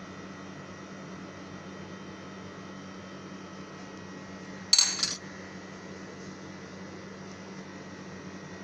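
A metal spoon clinks once, sharply, against a dish about five seconds in, over a steady low hum.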